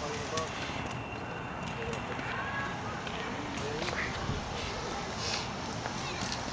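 Outdoor background with faint, scattered distant voices, at a steady low level.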